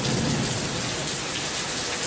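Heavy rain falling steadily in a downpour, a dense even hiss with no break.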